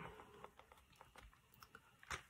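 Near silence with a few faint ticks and soft rustling of thin Bible pages being turned by hand.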